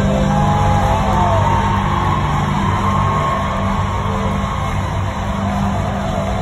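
Live R&B concert music played loud through an arena sound system, with a heavy steady bass and a high melody line that glides up and down over it.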